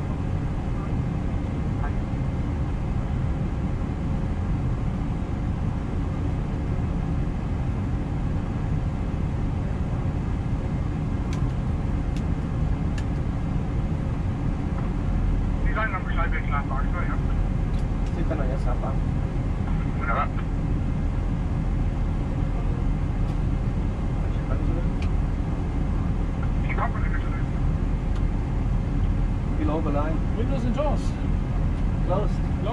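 Steady cockpit hum of an Airbus A320 standing at the gate with its engines not yet started, with a deeper low rumble joining about halfway through.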